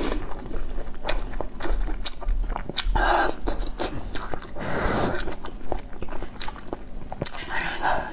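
Close-up mouth sounds of eating spicy noodle soup: wet chewing with many sharp smacking clicks, and breathy blows on a hot piece of food about three and five seconds in.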